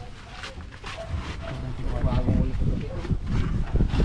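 Men's voices talking in the background, mixed and not clearly worded, over a steady low rumble.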